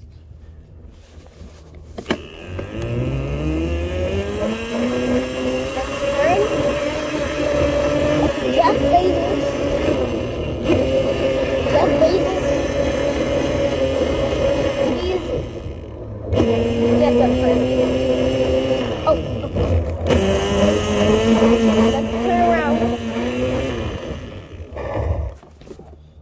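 Electric motor of a small battery-powered ride-on motorbike whining as it picks up speed: a rising whine that levels off at a steady pitch, cuts out briefly a few times and climbs again, then dies away near the end.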